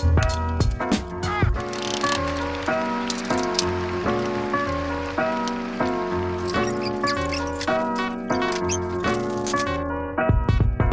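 Instrumental background music with a steady pulsing bass and changing melodic notes.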